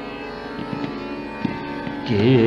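Tanpura drone from a slow vilambit raga Marwa performance, its strings ringing steadily, with a few soft tabla strokes in the middle and about a second and a half in.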